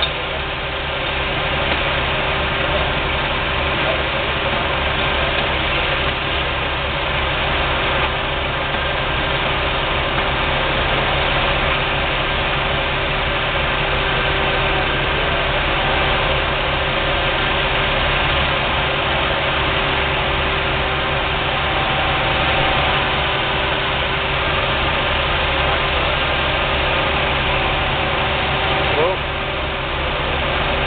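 Fire trucks' diesel engines running steadily at the scene, an even engine drone with a constant hum.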